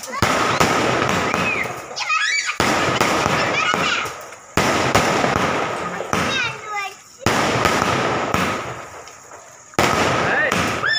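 Aerial fireworks bursting overhead: five sudden bangs about two to three seconds apart, each trailing off into crackling.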